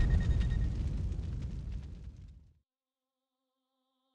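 Tail of a cinematic impact sound effect in a logo intro: a deep boom with crackle dying away and cutting off about two and a half seconds in, leaving only faint held music tones.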